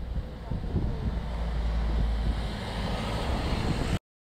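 Outdoor street ambience: a steady low rumble of wind on the microphone mixed with traffic noise and faint voices. It cuts off suddenly at the end.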